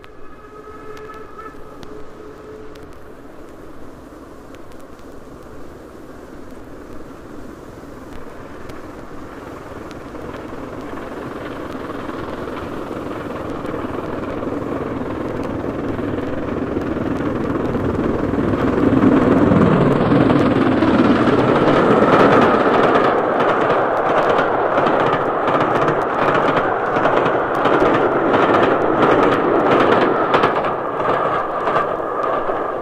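A steam train on an old LP recording, growing steadily louder as it approaches over about twenty seconds. It then passes close, and a quick regular beat comes in over the last several seconds.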